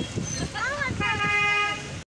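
A vehicle horn sounds one steady tone for just under a second, about halfway through, over low road noise heard from a moving car.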